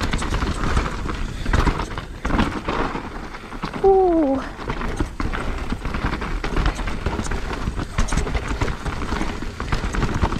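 Mountain bike rolling fast over a loose, rocky trail: the tyres crunch and knock on stones and the bike rattles with irregular clatter, over a low wind rumble on the microphone. A brief falling tone sounds about four seconds in.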